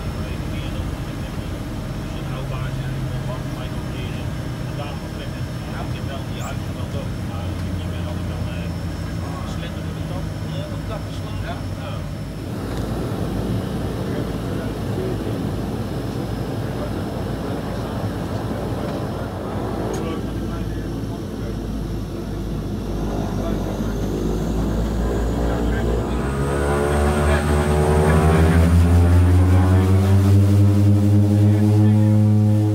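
de Havilland Canada DHC-6-300 Twin Otter's two Pratt & Whitney PT6A turboprops and propellers running at low power while taxiing, heard from inside the cabin. Near the end the pitch and loudness rise steadily as the overhead throttles are pushed up for takeoff.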